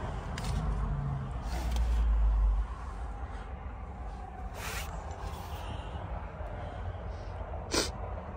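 Handheld camera handling noise inside a car cabin: a low rumble, heavier for the first two and a half seconds, with a few brief rustles and clicks as the camera is moved.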